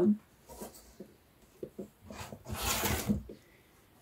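Cardboard-and-plastic window boxes being handled: a few light taps, then a rustling scrape of packaging about a second long in the middle.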